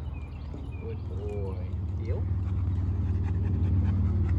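A road vehicle's engine, a low rumble growing steadily louder as it approaches. A couple of short rising-and-falling vocal sounds come about a second in and again near two seconds.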